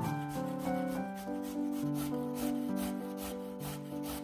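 A raw carrot being grated on a metal box grater, in quick repeated rasping strokes, over soft piano music.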